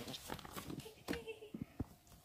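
Handling noise from a phone being moved and repositioned: scattered soft knocks and clicks, with a brief faint voice sound about a second in.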